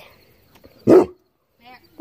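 A dog barks once, a single short bark about a second in.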